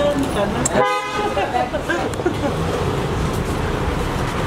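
A car horn toots briefly about a second in, amid shouting voices and the noise of a car moving off.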